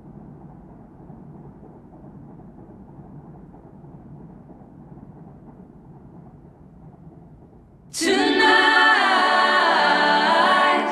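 A faint, steady low noise, then about eight seconds in, layered voices suddenly start singing a cappella, loud and multi-part.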